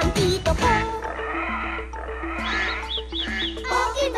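Children's TV theme music with a stepping bass line. From about a second in, an animal-call sound effect plays over it, and four short high chirps come near the end.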